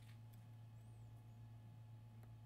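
Near silence, with a steady low hum.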